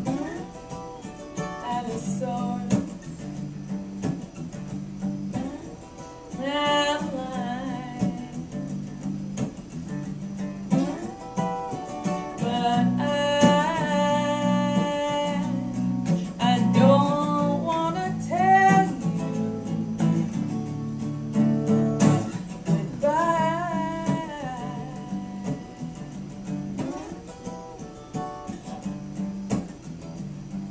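Acoustic guitar strummed steadily under a woman singing a folk song, her vocal lines coming in phrases with short gaps between them.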